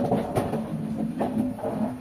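Metal-framed chair being dragged and set down on a ceramic tile floor, its legs scraping with a rough, wavering grind that starts abruptly.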